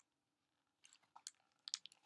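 Near silence, then a few faint, short clicks and ticks in the second half.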